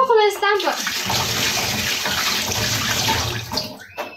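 Water running steadily in a tiled room for about three seconds, cutting off shortly before the end. A woman's voice is heard briefly at the start.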